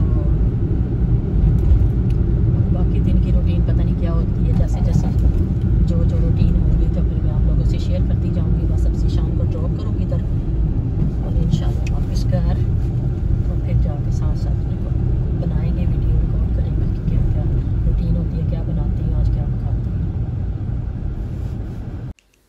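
Car cabin noise while driving on a wet road: a steady low rumble of engine and tyres, with faint scattered ticks above it.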